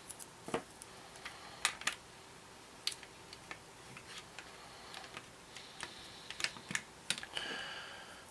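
Masking tape being handled and pressed onto a plastic scale-model fuselage by hand: scattered light clicks and taps, with a short scratchy sound near the end.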